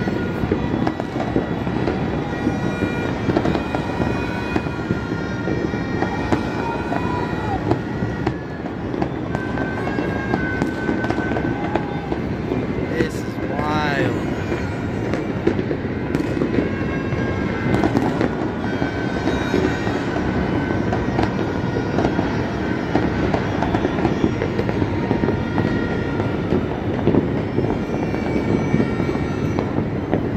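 New Year's fireworks and firecrackers going off all over a city: a dense, nonstop crackle of many bangs near and far. Scattered held tones come and go, and a whistle slides in pitch about halfway through.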